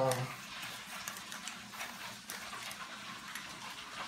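Handheld herb grinder being twisted to grind dried cannabis: faint crunching with a few light clicks.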